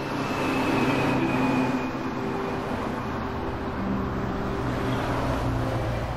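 Road traffic: a car driving past on a paved road, its tyre and engine noise swelling about a second in and then holding as a steady traffic hum.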